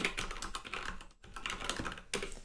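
Typing on a computer keyboard: a quick run of keystrokes entering a file name, with a brief pause about a second in.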